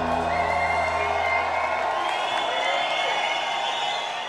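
A live band's sustained closing chord, bass and keyboards, fading out over the first two seconds. A crowd cheers and whoops under it and carries on after the music is gone.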